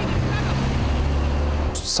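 Low, steady engine rumble of a heavy vehicle.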